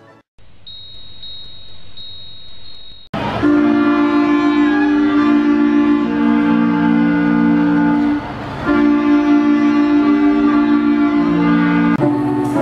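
Small woodwind ensemble of clarinets and a saxophone playing slow, long held notes in harmony, starting suddenly about three seconds in with a brief break near eight seconds. Before it there is a hiss with a faint high steady tone.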